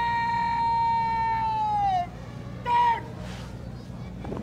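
A parade commander's shouted drill word of command: one long, drawn-out call that falls in pitch at its end, followed less than a second later by a short, sharp second call.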